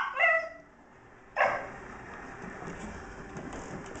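Scottish terriers vocalizing in play: a short high yip right at the start, then a single sharp bark about a second and a half in.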